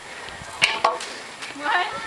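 Two sharp knocks about a quarter of a second apart, followed by a voice counting "one".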